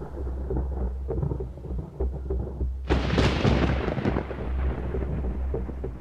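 Thunder rumbling low and steadily, with a louder clap about three seconds in that rolls and slowly dies away.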